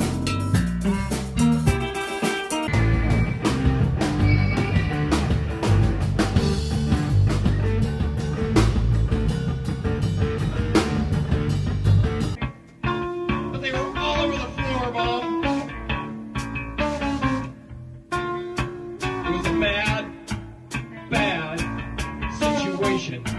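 Jam-band rock music led by electric guitar over bass and drums. About halfway through, the bass and drums drop out, leaving lighter guitar lines with bending notes.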